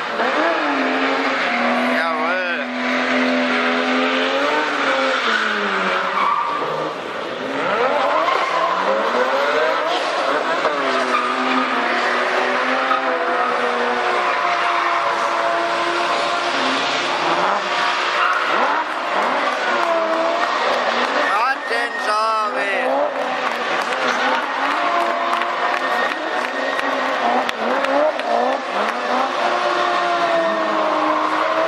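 A drift car's engine revving up and down as it slides through corners with its rear tyres squealing and smoking. About two-thirds of the way through there is a brief rapid warble in the engine note.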